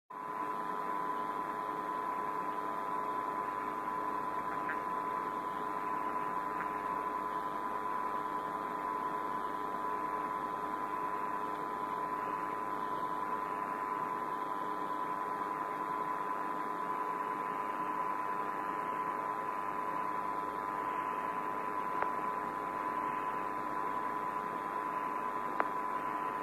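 Steady hiss and hum of an open Apollo air-to-ground radio channel, narrow and tinny in tone, with a few constant tones running underneath.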